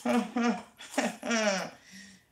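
A woman's voice in two short vocal utterances: no sound other than voice.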